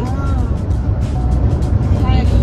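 Steady low road and engine rumble heard inside a moving car's cabin, with music playing quietly.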